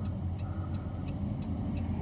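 A car running, heard from inside: a steady low engine and road rumble, with a faint ticking about three times a second.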